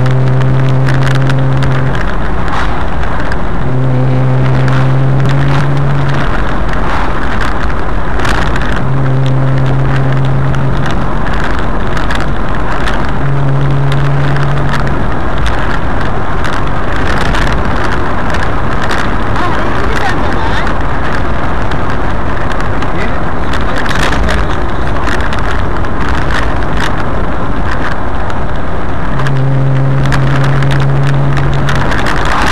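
Loud wind rushing over a microphone on the bonnet of a moving car. A steady low engine drone comes through for a second or two at a time, several times.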